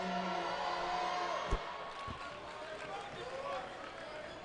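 Arena crowd murmur with a long drawn-out call from a fan, then a sharp thud about a second and a half in and a softer one half a second later: a basketball coming down on the hardwood floor after a made free throw.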